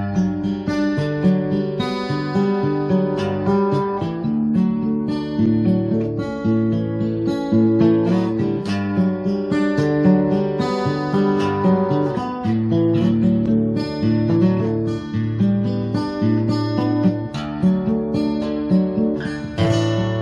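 Background music on acoustic guitar: picked notes and strummed chords at an even pace.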